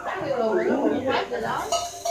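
Spoons clinking against bowls and cups during a meal, with a couple of sharp clinks in the second half, over a voice that slides down in pitch in the first second.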